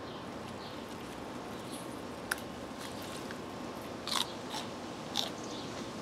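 Crisp crunches of raw sugar snap pea pods being bitten and chewed: one sharp snap about two seconds in, then a few short crunches near the end, over a steady background hiss.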